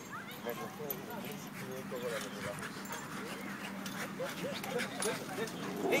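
Dog whining in a string of short calls that rise and fall in pitch, with people's voices in the background.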